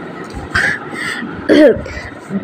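A person clearing their throat: a couple of rough, breathy bursts about half a second in, then a short voiced grunt with a falling pitch near the end.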